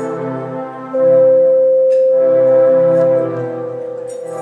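Live music: a bed of layered, sustained tones, with one loud note held steady from about a second in until about three seconds in.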